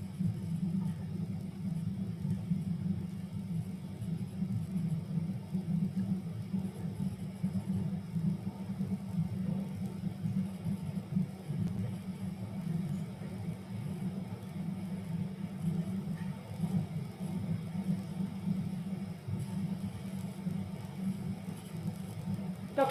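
Steady low rumble of background noise with no speech, flickering slightly in level throughout.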